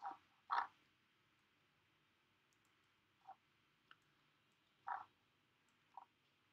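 A few faint, short clicks from working a computer, about five of them spaced irregularly, the loudest about half a second in and near the end, over near-silent room tone.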